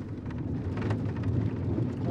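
Steady low rumble of road noise inside a car's cabin.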